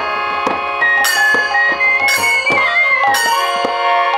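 Kirtan ensemble playing: a harmonium holds chords, khol drums are struck in a steady rhythm with sharp strokes, and a flute plays a melody that slides up and down.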